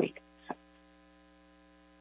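A spoken word trails off, then near silence with a faint, steady electrical hum on the audio line.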